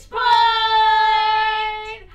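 A woman's voice holding one long, high vocal note, drawn out for almost two seconds and dropping slightly in pitch near the end.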